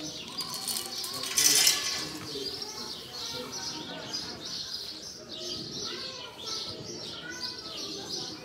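Many small birds chirping steadily. About a second and a half in, a short loud rattle of feed pellets dropping into a metal feeder bowl.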